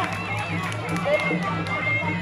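Traditional Kun Khmer ringside music: drums beating a steady pulsing rhythm with a thin, reedy wind melody, under crowd voices and shouts.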